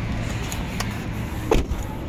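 Inside a running car's cabin: a steady low rumble, with a few light clicks and one louder thump about one and a half seconds in.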